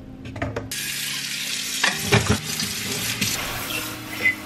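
Kitchen tap running into a sink, turned on about a second in, with dishes and cups knocking together a few times.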